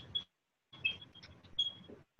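Faint short squeaks and light taps of writing on a board, a few seconds of quiet room in between.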